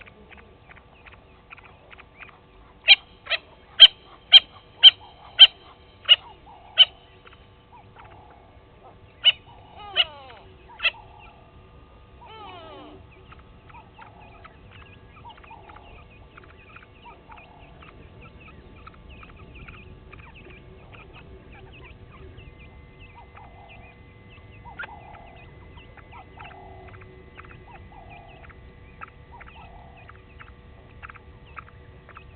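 Natal spurfowl calling: a run of about eight loud, sharp calls, a little under two a second, starting about three seconds in, then three more after a short pause. Faint short chirps carry on throughout.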